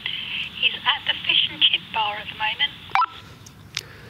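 A woman's voice answering over the small loudspeaker of a Retevis PMR446 walkie-talkie, thin and tinny, with the top and bottom cut away by the radio. It ends in a short beep as her transmission ends, about three seconds in.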